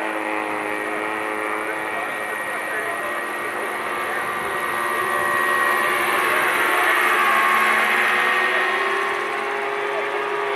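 Large radio-controlled scale Sea King helicopter flying low past, its motor and rotors giving a steady droning whine that grows louder as it passes closest about seven seconds in, then eases as it climbs away.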